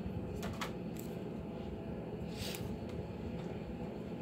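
Faint sounds of paper being cut and handled with scissors: a few soft clicks in the first second and a brief papery swish about two and a half seconds in.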